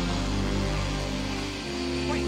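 Dark, sustained film-score music: held low chords, with a deep bass note coming in near the end.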